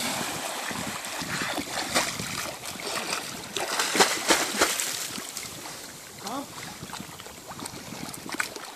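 Doberman splashing hard as it paddles through sea water, with choppy splashes loudest about four seconds in, then calmer swimming sounds in the last few seconds.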